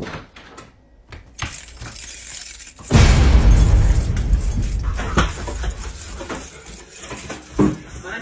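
Keys jangling and clicking at a door lock, then, about three seconds in, a sudden loud, noisy commotion with knocks and thumps.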